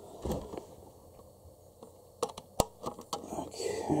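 Handling of a USB cable and its plugs: a thump early, then a quick run of sharp clicks and light knocks around the middle as the plug is fitted into its socket, with some rustling toward the end.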